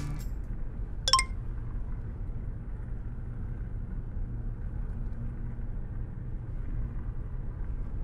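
Low, steady rumble of a Porsche Cayenne heard from inside the cabin, with the engine idling. A single short electronic beep sounds about a second in.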